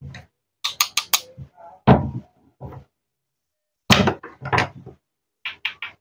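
Hard plastic toy cucumber and wooden toy knife clacking and tapping on a wooden cutting board as the toy is cut into its two joined halves and pulled apart: short sharp clicks in clusters, the loudest about two seconds in.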